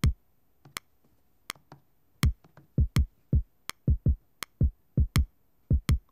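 A sampled electronic kick drum from Studio One's Impact XT plays a looping one-bar step pattern, with short deep thumps that grow more frequent as kick steps are added. Over it a metronome click ticks about every three-quarters of a second.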